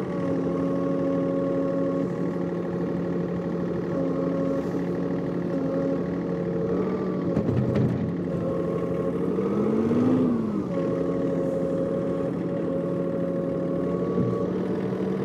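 John Deere 3046R compact tractor's diesel engine running steadily at working speed as the loader bucket pushes snow. Its pitch dips briefly about seven to eight seconds in, then rises and falls again around ten seconds in.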